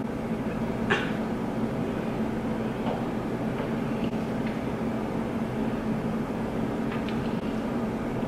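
Steady low background hum with a faint low tone, and a few faint ticks scattered through it.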